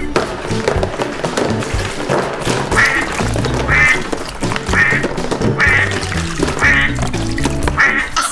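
Rubber-duck quacks, six short ones about a second apart starting about three seconds in, over upbeat children's background music.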